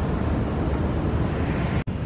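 Steady outdoor noise, mostly a low rumble with a hiss above it, like wind on the microphone over distant city traffic; it drops out for an instant near the end.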